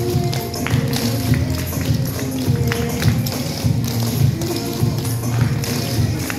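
A song playing, with the metal taps of clogging shoes clicking in quick runs on a wooden stage floor.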